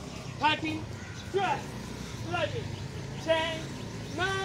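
A person's voice giving short, falling-pitched calls about once a second, in the rhythm of exercisers doing jump-squat reps.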